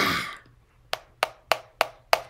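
A short breathy burst at the start, then five sharp taps, evenly spaced at about three a second.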